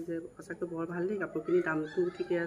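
A woman speaking in a steady, conversational voice. The speech recogniser caught no words here.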